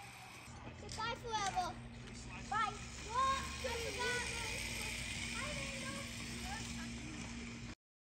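High children's voices calling out several times, with no clear words, over a steady low hum. The sound cuts off suddenly near the end.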